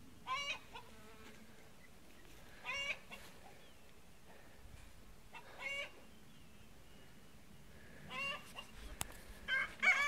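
Chickens clucking: about five short, fairly faint calls spaced a couple of seconds apart.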